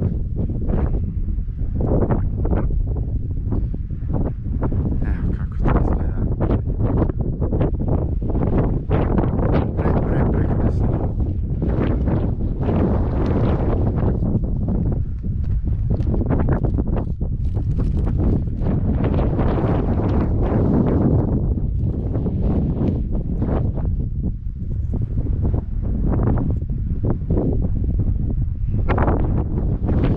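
Wind buffeting the camera microphone in uneven gusts: a loud, continuous low rumble.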